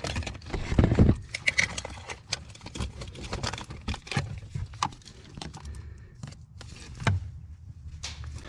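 Plastic wire-harness cover under a car's dashboard being twisted and broken apart with pliers: irregular cracks, snaps and clicks of plastic, with wiring and connectors rattling.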